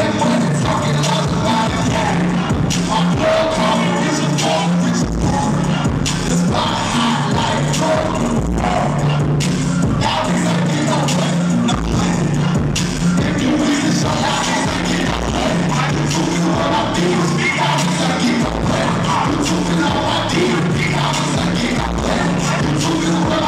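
Live hip-hop performance heard through a club sound system: a loud rap beat with a heavy bass line and deep bass hits, with a rapper's vocals over it.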